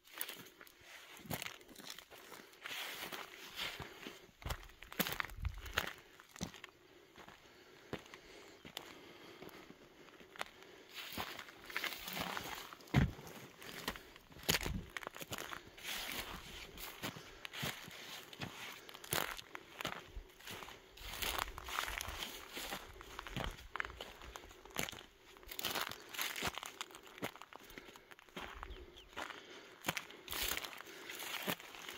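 Footsteps crunching irregularly over dry, stony dirt and scrub.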